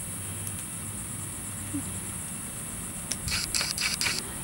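Steady high-pitched chorus of crickets, with a few short clicks and rustles near the end.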